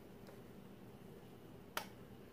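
A single short, sharp click near the end, from the flat iron and brush being handled while hair is straightened, over a faint steady room hum.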